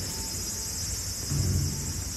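Ambient track with a steady high insect chorus laid over a low rumble. A faint thin tone sits in the background, and a low, deep note swells in about halfway through.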